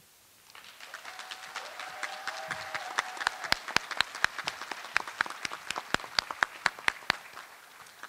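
Audience applauding: the clapping starts about half a second in, builds to a full round of claps and thins out near the end.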